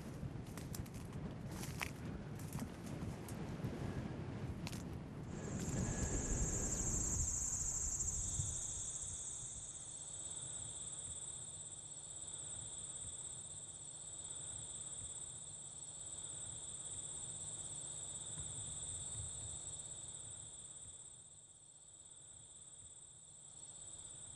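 Insects chirring in a summer meadow: a steady high-pitched tone begins about five seconds in, and a second, lower steady tone joins a few seconds later. Before them comes a rustling rush of noise with a few clicks, loudest just as the insects start.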